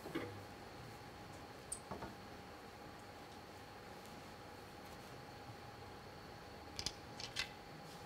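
Hushed indoor arena room tone with a faint steady electrical hum, broken by a few soft clicks and taps about two seconds in and again near the end.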